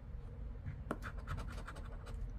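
A coin scraping the latex coating off a scratch-off lottery ticket in a run of short, quick strokes, one sharper stroke about a second in.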